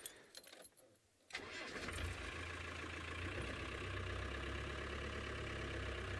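Open safari game-drive vehicle's engine starting about a second in, then running steadily with a low hum.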